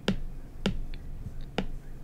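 Apple Pencil tip tapping on the iPad's glass screen, three sharp taps spread about half a second to a second apart.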